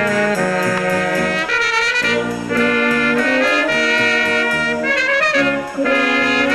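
A small wind band of saxophones and brass horns playing a tune in held chords, with the melody moving over them.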